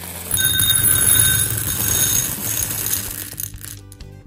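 Skittles candies pouring from the bag into a small glass bowl: a dense rattle of hard candies hitting glass for about three seconds, with the bowl ringing over it.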